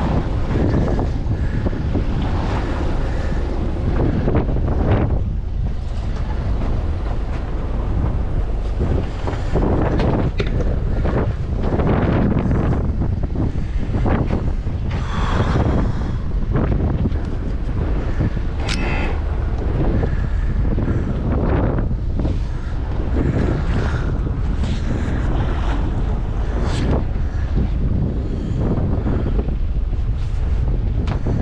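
Wind buffeting the microphone on a small boat at sea, in uneven gusts, over the wash of choppy waves against the hull.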